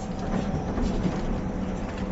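Moving bus heard inside the cab: a steady low rumble of engine and road noise with a faint steady hum on top.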